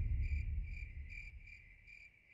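Crickets chirping steadily, about three chirps a second, over a low rumble that fades away. It is the night-time cricket sound filling a comic pause in the dialogue.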